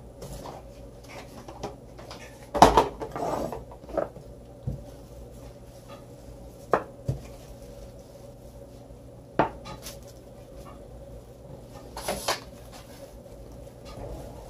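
Rolling pin and plastic cling film on a marble countertop as shortbread dough is rolled out between two sheets of film: crinkling and rubbing of the plastic with scattered sharp knocks, the loudest about three seconds in.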